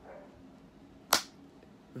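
A single sharp hand clap about halfway through.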